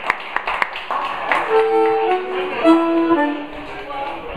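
Blues harmonica playing a few long held notes that step down in pitch, after a quick run of clicks at about four a second in the first half-second.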